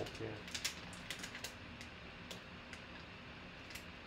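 Scattered light clicks and crinkles of a foil card pack being pulled open and a plastic graded-card slab slid out of it, over a faint steady hum.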